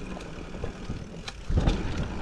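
Fantic Integra mountain bike rolling fast down a dirt trail: tyre rumble and frame and drivetrain rattle with a few sharp ticks, with wind buffeting the body-mounted camera's microphone. The rumble grows louder about one and a half seconds in.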